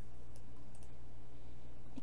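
A few faint computer mouse clicks over a steady low background hum.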